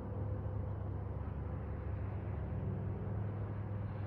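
Steady low mechanical rumble with a faint hiss, unbroken and even in level.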